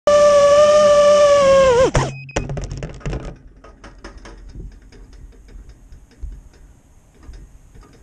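A racing quadcopter's brushless motors (Emax RS2306 2400kV) running with a steady whine, then dropping in pitch and stopping just under two seconds in as they spin down. A few clicks and knocks follow, then faint ticking and a faint high whine.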